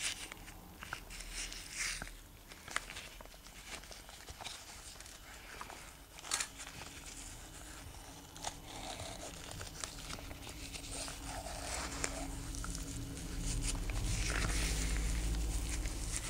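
Rubber-gloved hands pulling a wad of wet, rusting steel wire wool out of a glass jar and handling it on paper towel: scattered rustling and crinkling with small clicks. A low rumble builds in the last couple of seconds.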